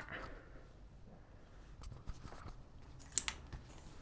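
Plastic clothes hangers clicking and sliding along a clothes rail as garments are pushed aside, with faint fabric rustle and two sharp clicks a little after three seconds in.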